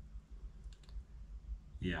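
A pause in a man's talk: a low steady hum with a few faint clicks under a second in, then he says "yeah" near the end.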